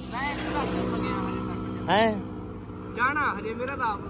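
Motorcycle engine idling steadily, with a few short bursts of a man's voice over it.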